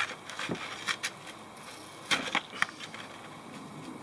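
A narrow metal blade scraping and chipping at a blob of half-cured thinset mortar on Kerdi board, a few short sharp scrapes and clicks, the loudest about two seconds in. The keyed-in mortar is firmly bonded and resists the blade, crumbling rather than popping off.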